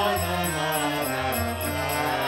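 Kirtan chant: a man sings a gliding devotional melody over a harmonium holding steady reed chords.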